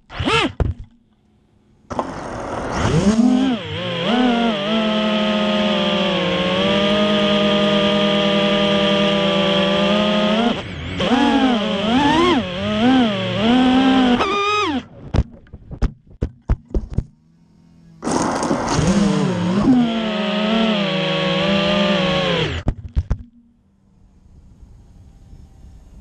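FPV racing quadcopter's brushless motors and Ethix S3 propellers whining, the pitch rising and falling with the throttle, from about two seconds in until it cuts off near fifteen seconds. A run of sharp clicks follows, then a second burst of motor whine from about eighteen to twenty-three seconds that stops suddenly.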